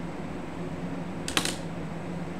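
A quick cluster of two or three sharp clicks about a second and a half in, over a steady low hum.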